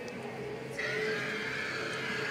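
A long, high, wavering cry like a horse's whinny, starting about a second in and sliding slowly downward, played as a spooky sound effect.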